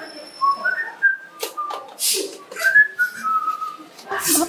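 A person whistling a string of short notes at varying pitches, broken by a few short hissing breaths.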